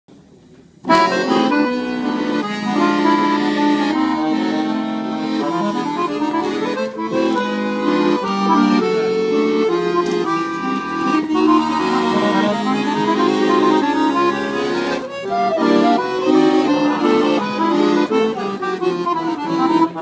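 Weltmeister Supita piano accordion playing a lively Romanian hora, with fast runs of notes rising and falling over sustained chords. The playing starts suddenly about a second in.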